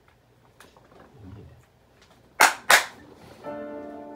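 Two sharp clicks in quick succession a little past the middle, then a held keyboard chord starts near the end and opens the song.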